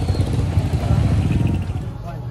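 Motorcycle engine running close by, a loud low rumble that fades about a second and a half in.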